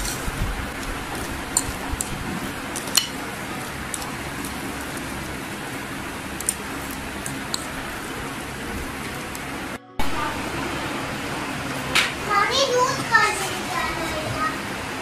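Metal fork stirring mashed boiled egg and mayonnaise in a glass bowl, with a few sharp clinks of the fork against the glass over a steady background hiss.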